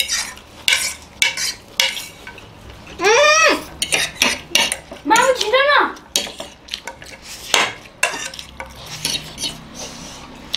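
Metal forks scraping and clinking against plates as people eat noodles, in many short irregular clicks. A voice sounds briefly twice, about three and five seconds in.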